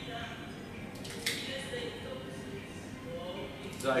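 A single sharp snip of a cigar cutter closing on the cigar's cap about a second in.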